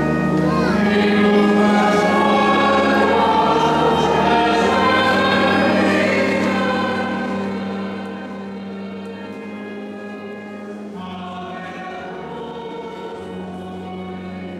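A choir singing slow music with long held notes over steady low notes; the music gets quieter about eight seconds in.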